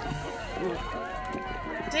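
Quiet speech with faint background music, typical of a TV drama's soundtrack playing under the conversation.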